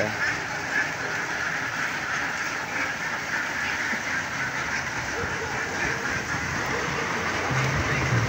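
A flock of domestic ducks quacking and chattering together in a steady, continuous din as they pour out of their cart.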